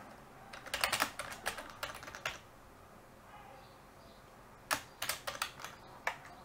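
Computer keyboard typing in two short bursts of keystrokes, one about half a second in and one near the end, with a pause between.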